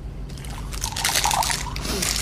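Liquid being poured into a cup.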